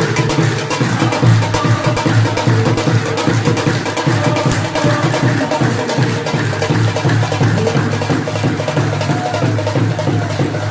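Devotional music driven by a dholak and tabla, with a congregation clapping along in a steady rhythm.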